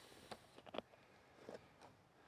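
Near silence, with a few faint clicks from hands raising the front standard of a wooden Deardorff view camera.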